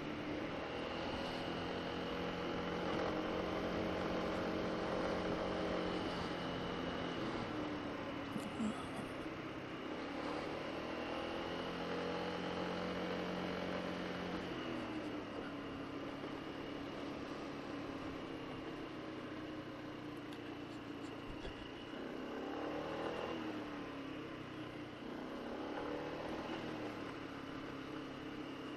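Honda SH150i scooter's single-cylinder four-stroke engine running under way, its pitch rising as it speeds up and falling as it eases off several times, over a steady rush of wind and road noise.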